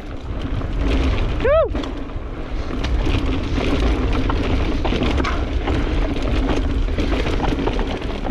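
Mountain bike riding down a dirt singletrack, heard from a camera on the bike: wind rumbling on the microphone, tyres rolling over dirt, and chain and frame rattling over bumps. A short voiced whoop about a second and a half in.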